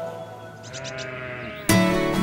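A sheep bleating once, for about a second, over quiet background music. Near the end, loud strummed acoustic guitar music starts suddenly.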